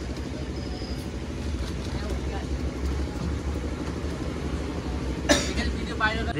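Steady low rumble of street traffic with faint background voices. A single sharp clatter near the end is the loudest sound.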